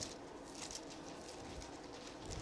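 Faint rustling of thin Bible pages being leafed through by hand, a few soft brushes against low room tone.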